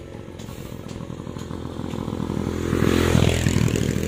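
A motor scooter approaching and passing close by, its small engine getting steadily louder to a peak about three seconds in.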